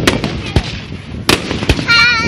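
Aerial fireworks bursting: about four sharp bangs in two seconds, the last two the loudest, over a steady background of noise.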